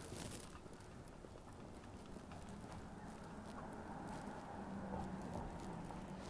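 Faint city street ambience: a low steady hum with scattered faint clicks and taps.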